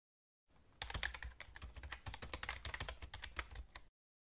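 A quiet, quick and uneven run of light clicks and taps, several a second, starting just under a second in and stopping just before the end.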